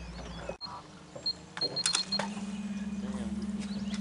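A few clicks and short high beeps, then a steady low mechanical hum with a fast, even pulse that starts about halfway through, like a small motor running.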